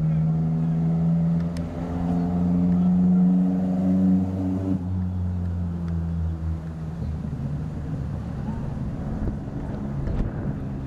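An engine running with a steady, pitched hum that shifts slightly in pitch and dies away about five to seven seconds in, leaving a rougher background noise.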